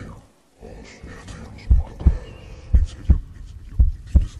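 Heartbeat sound effect: deep double thumps, lub-dub, about one a second, starting a little under two seconds in.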